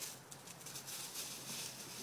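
Quiet outdoor background noise: a faint, even hiss with a few soft ticks.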